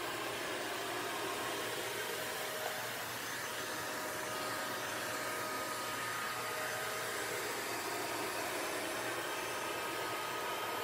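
iLife A10 lidar robot vacuum running on carpet with its suction at maximum: a steady whooshing fan noise with a faint steady whine in it.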